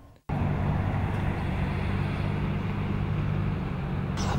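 Steady outdoor city background noise with a low, even drone, like distant traffic, starting abruptly just after the start and holding level.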